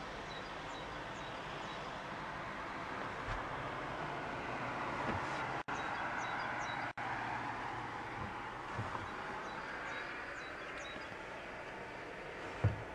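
Steady background noise, a dull rush that swells a little in the middle, with faint short high chirps dotted through it.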